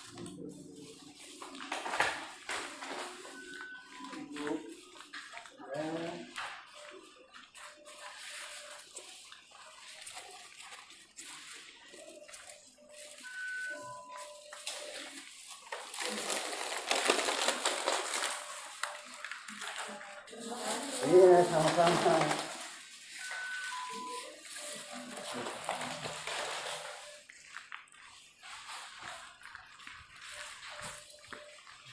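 Indistinct voices, with two louder stretches of rustling hiss in the middle, and a short two-note beep, high then lower, that comes back about every ten seconds.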